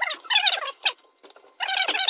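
Kitchen knife slicing through avocado halves on a wooden cutting board, giving a series of short squeaks, several of them falling in pitch.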